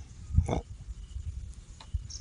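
A man's short grunted "oh" about half a second in, over uneven low rumbling handling noise on the phone microphone, with a sharp click near the end.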